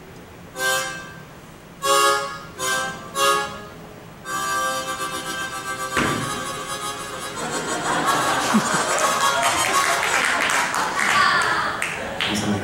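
Solo harmonica: four short notes in the first few seconds, then a held chord from about four seconds in. The playing grows louder and busier through the second half.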